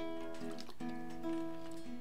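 Soft acoustic guitar playing sustained chords, with the chord changing about a second in.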